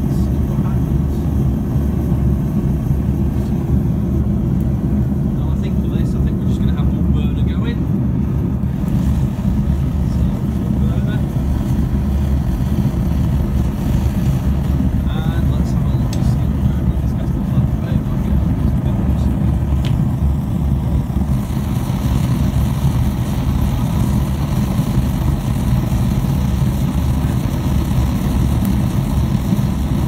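Twin-burner Devil Forge propane gas forge burning with a steady low rumble. About twenty seconds in, a brighter hiss joins it.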